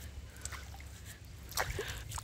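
Faint splashing and dripping of stream water thrown by hand over a man's head, over a steady low rumble.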